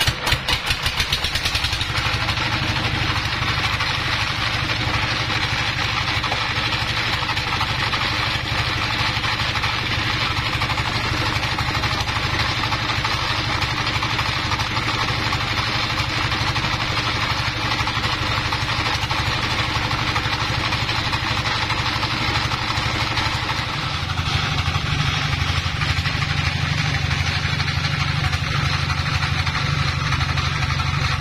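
Dong Feng single-cylinder stationary diesel engine catching after a cold start, its firing strokes quickly speeding up and then settling into a steady run. About 24 seconds in its running note grows deeper and slightly louder.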